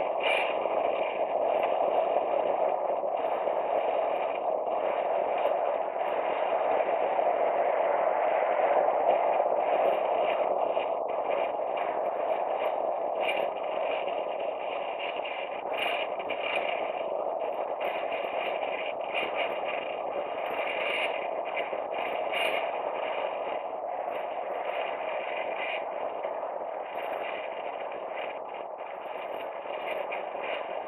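Wind rushing over the microphone of a camera on a road bicycle riding fast downhill, a steady muffled rush mixed with road noise, with scattered light clicks and rattles. It eases off a little in the second half.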